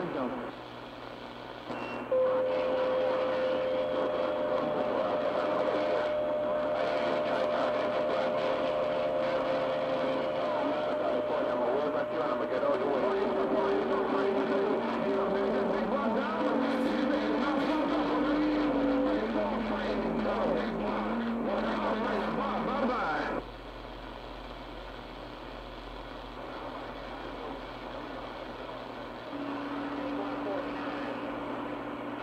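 CB channel 6 (27.025 MHz) AM reception through a shortwave receiver's speaker. A strong, noisy, distorted skip transmission carries steady whistling tones that step down in pitch for about 20 seconds, then drops out to quieter band noise. A new low whistle starts near the end.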